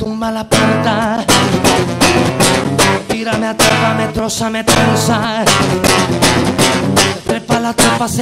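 Classical nylon-string acoustic guitar strummed in a steady rhythm, with a man's voice singing over it at intervals.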